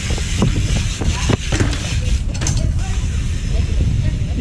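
BMX bike rolling over a concrete path, with scattered knocks and rattles over a steady low rumble.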